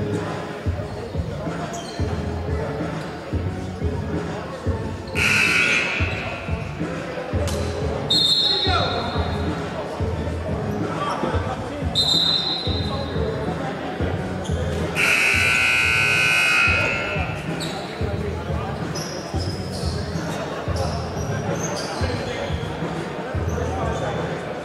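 Scoreboard buzzer in a basketball gym during a stoppage: a loud blast of about a second some five seconds in, then a longer one of about two seconds a little past the middle. Under it run low thumps in an even rhythm and voices echoing in the hall.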